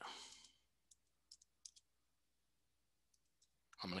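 A few faint computer keyboard key clicks in two short runs, about a second in and again after three seconds, over near silence: a file name being typed.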